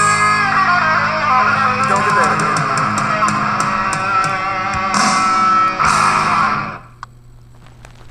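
Closing bars of a 1980s glam-metal rock song: electric guitars, bass and drums playing, with cymbal crashes about five and six seconds in. The band stops suddenly near the end, leaving only a faint low hum.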